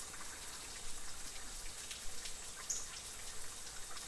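Small waterfall trickling and dripping off a mossy rock ledge: a steady splashing hiss with a few faint drops.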